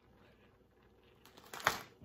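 Faint room tone, then about a second and a half in a brief rustle and crinkle of a plastic zip-top bag of shredded cheese as cheese is sprinkled by hand onto a flour tortilla.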